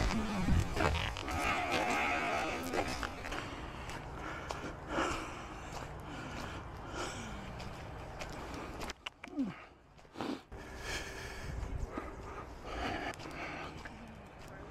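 Walking on a gravel path, picked up by a small action camera's built-in microphone: irregular footsteps, crunching and handling noise, with a short break about two-thirds of the way through.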